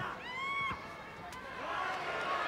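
A short high-pitched voice cry that rises and falls in pitch, over faint arena background noise, followed about a second later by a single sharp smack of a strike landing.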